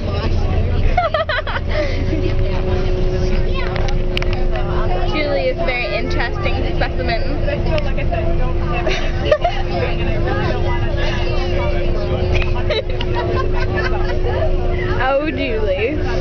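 Inside a bus: a steady low engine rumble with a constant hum over it, and the murmur of passengers talking in the background.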